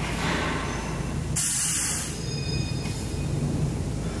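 Compressed air from a truck's air system hissing in one short loud burst about a second and a half in, over the steady low hum of the idling diesel engine. The leak being chased has been traced to the driver's seat.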